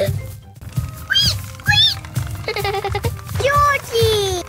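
Children's background music with a steady low beat, with short, high, squeaky cartoon character voice sounds over it that rise and fall.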